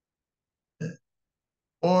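Mostly silence, broken by a brief vocal sound from a man about a second in; he starts speaking again near the end.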